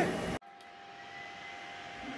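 Faint steady whir with a few thin, steady whining tones: the cooling fans of an Anycubic Kobra 2 Max 3D printer running just after it is powered on.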